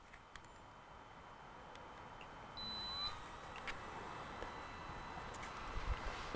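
Autel Evo drone controller powering up: a faint short rising tone, then a single high-pitched electronic beep about half a second long, roughly two and a half seconds in, with a few light button clicks.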